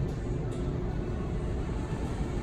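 Steady low hum and rumble of a supermarket's background noise, with a faint click about half a second in.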